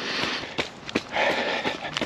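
A runner's heavy breathing, two long noisy breaths, with the knock of running footfalls a little under half a second apart, from someone pushing hard near the end of a half marathon.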